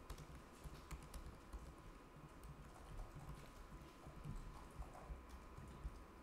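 Faint typing on a computer keyboard: an irregular run of soft keystrokes.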